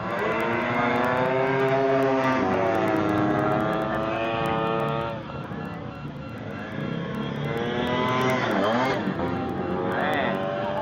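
Modified racing Vespa scooter engines revving hard through a corner and passing by, their pitch rising and falling. The sound eases off about halfway through, then another scooter builds up and passes near the end with a sharp drop in pitch.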